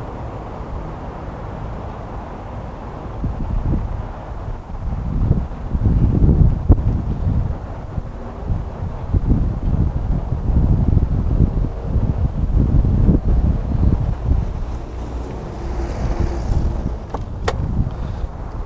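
Wind buffeting the microphone in irregular low gusts from about three seconds in, over a faint steady hum. A sharp click comes near the end.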